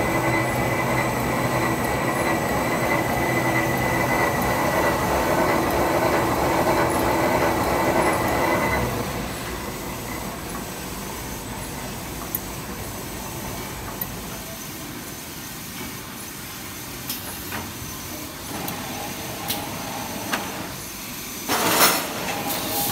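Tissue paper rewinder machine running: a steady mechanical whir of rollers and gears with a few held tones, louder for the first nine seconds or so, then quieter with scattered clicks. A short loud rush of noise comes near the end.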